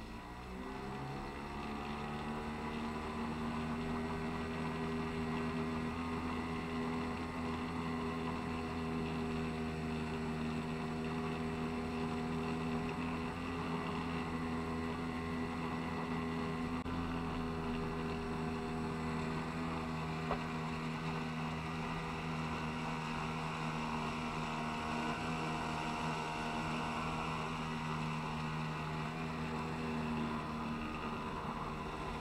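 Small outboard motor driving a small boat: its pitch rises over the first couple of seconds as it speeds up, then it runs steadily at cruising speed.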